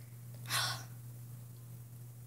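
One short sniff, about half a second in: a person breathing in through the nose to smell a cherry-scented EOS lip balm held up to the face. A steady low electrical hum runs underneath.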